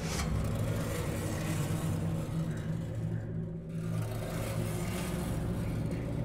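Low steady droning tones under a rushing, rumbling noise that starts suddenly and thins out briefly a little past the middle, like traffic or a car going by.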